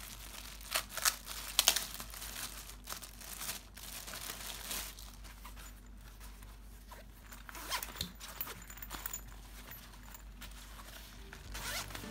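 Clear plastic polybag rustling and crinkling in irregular bursts as a crossbody bag is pulled out of it, loudest about a second or two in.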